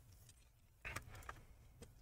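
Near silence with a few faint, short clicks and taps, a cluster about a second in and one more near the end, as a laptop's heatsink-and-fan assembly is handled and lifted off the motherboard.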